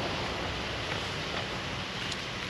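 Steady wind noise, with wind buffeting the microphone.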